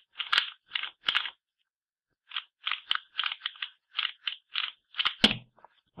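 A 2x2 plastic speedcube being turned fast by hand, its layers clacking in quick bursts with a short pause partway through. About five seconds in there is one louder smack as both hands slap down on the QJ timer's touch pads to stop it.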